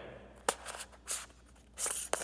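A round lens filter being turned and threaded by hand: a sharp click about half a second in, light scratchy rubbing, then a louder rasping scrape near the end.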